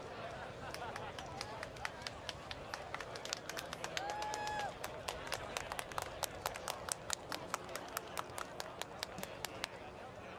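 Distant crowd murmur with a run of sharp hand claps that settles into a fairly even three or four a second. About four seconds in there is a short, steady tone.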